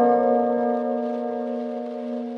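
Background instrumental music of bell-like chimed notes: a chord struck right at the start rings on and slowly fades.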